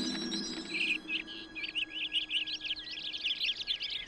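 A flock of small birds singing together, a dense rapid twittering of high chirps that starts about a second in.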